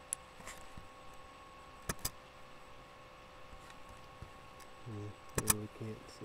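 Several sharp clicks, two of them in quick pairs about two seconds and five and a half seconds in, with a brief low hum of a man's voice near the end over faint steady high-pitched electrical tones.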